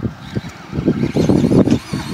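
Traxxas Skully electric RC monster truck driving, its motor and tyres running in uneven spurts.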